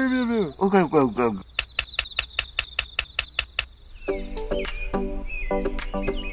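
A high cartoon voice effect that slides down in pitch, then a quick run of even clicks, about five a second, and from about four seconds in, background music.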